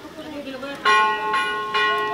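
Temple bell struck three times in quick succession, about half a second apart, each strike ringing on over the last, over a murmur of voices.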